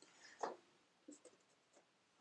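Faint scratchy rubbing and scuffing of a clothes iron and hands on a denim jacket and an iron-on patch, with one louder scuff about half a second in and a few light ticks after.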